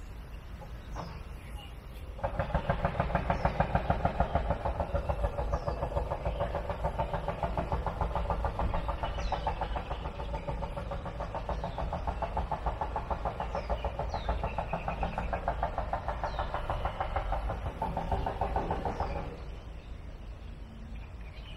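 A small engine running with a fast, even pulse, starting abruptly about two seconds in and cutting off near the end. Faint short falling bird chirps repeat every second or so over it.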